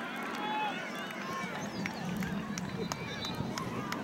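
Indistinct voices of players and spectators calling and talking across an open soccer field, several overlapping, too distant for words to be made out, over steady outdoor background noise.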